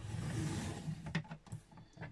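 Scoring blade of a paper trimmer slid along its rail across thick cardstock: a scraping swish of about a second, then a couple of light clicks.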